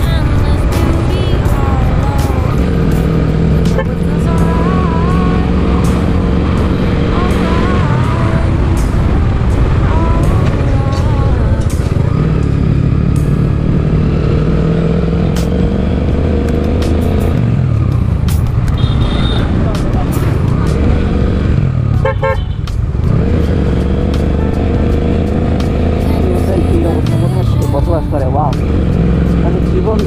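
Suzuki Gixxer SF motorcycle cruising, its engine running steadily under heavy wind and road noise, with a song playing over it throughout.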